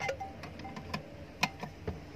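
Light metallic clicks, about four in two seconds, each with a brief ring, as a long screwdriver works at the screws of a single-phase electric motor's metal end cover.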